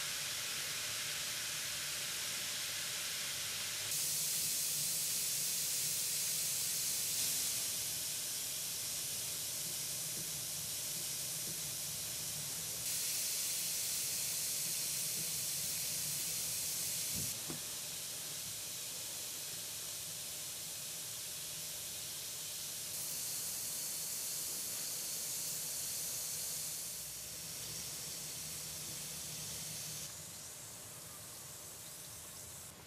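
Bikkura Tamago bath ball fizzing as it dissolves in a basin of water: a steady hiss of bubbles that grows louder and softer in steps a few times.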